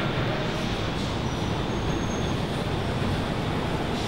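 Elevated subway train running on the steel el structure overhead: a steady noise with a faint high wheel squeal around the middle.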